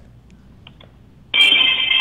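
A brief lull, then about a second and a half in, music starts playing loudly down a telephone line, sounding thin and narrow as phone audio does.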